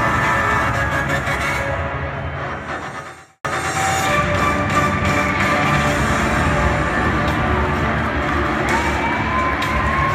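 Guitar rock music fades out and cuts off about three seconds in. It is followed by stadium crowd noise with music playing, and a long wavering tone near the end.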